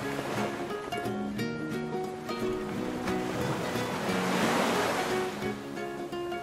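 Background music of short, evenly struck notes over the wash of sea waves, which swells and fades away about four to five seconds in.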